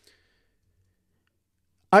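Near silence with a faint, brief click right at the start; a man's voice begins again just before the end.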